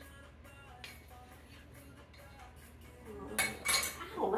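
A wooden spoon knocking sour cream out of a metal measuring cup over a soup pot: a small tap about a second in, then two sharp clinks near the end, over quiet background music.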